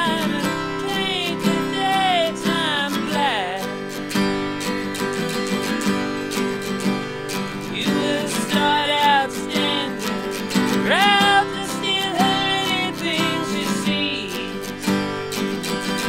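Acoustic guitar strummed steadily under a harmonica played from a neck rack, the harmonica carrying the melody with bent notes sliding down and up. It is an instrumental break in a solo folk performance.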